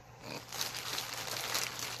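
Plastic shopping bag crinkling and rustling as skeins of yarn are dug out of it, starting about half a second in.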